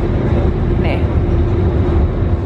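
NYC Ferry underway at speed: a steady engine drone with one held humming tone, under a constant low rumble of wind on the microphone.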